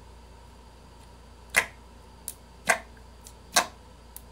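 Fingers poking and squeezing clear slime, giving sharp clicking pops as trapped air is pressed out: three loud clicks about a second apart in the second half, with a fainter one between the first two.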